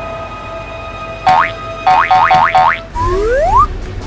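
Cartoon sound effects over a held musical tone: one quick upward chirp, then four rapid rising chirps in a row, then a longer rising whistle glide near the end.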